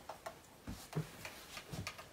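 Faint, irregular clicks and taps of a thin wooden stick knocking against the inside of a clear plastic water bottle while the liquid is stirred, with a few soft low knocks.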